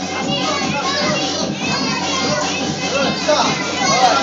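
Many young children's voices chattering and shouting at once, a continuous overlapping din.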